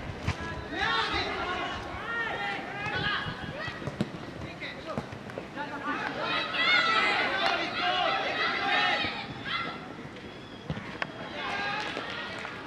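Boys' voices shouting and calling to each other across a football pitch during play, busiest past the middle, with a few sharp thuds of the ball being kicked.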